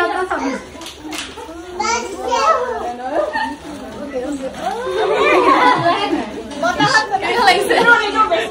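A group of women and girls talking and calling out over one another in lively, overlapping voices, busiest in the second half.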